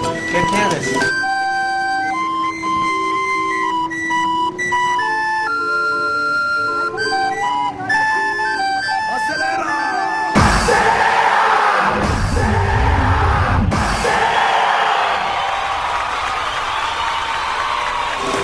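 A tinkly street barrel organ tune in clear held notes stepping up and down, for about the first ten seconds. Then the sound changes abruptly to loud, busy street noise with voices.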